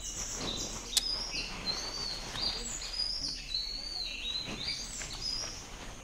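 Birds chirping: an unbroken string of short, high chirps, several a second, with a faint click about a second in.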